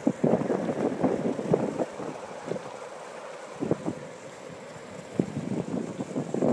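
Wind buffeting the microphone outdoors in irregular gusts, busier in the first couple of seconds and easing off in the middle.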